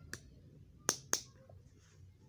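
Three sharp clicks of small plastic toy kitchen pieces being handled, the second and third close together and louder.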